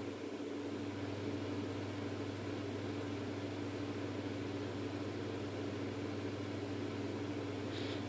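Steady low hum with a faint even hiss: room tone with a machine-like drone running throughout.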